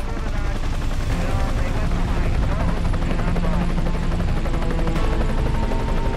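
Helicopter in flight, heard close up from on board: the steady rapid beat of the main rotor over the whine and rush of the turbine engine.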